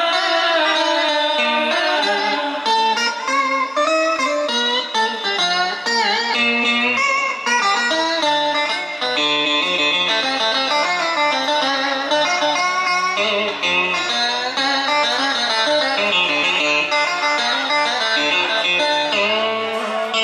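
Live guitar playing a melodic instrumental break, with runs of notes that bend and slide.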